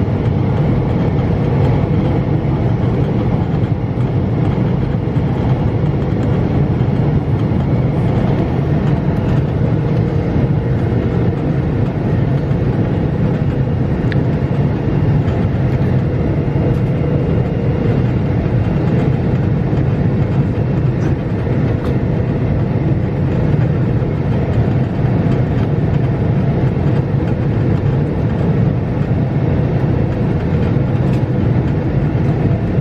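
Steady engine and airflow noise heard inside the cabin of a Boeing 777 airliner in flight on its descent, a loud, even low rumble with a faint steady hum above it.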